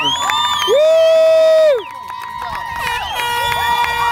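Sideline spectators cheering: a long, high-pitched "woo" is held for about a second, starting just under a second in. Other voices yell and cheer around it.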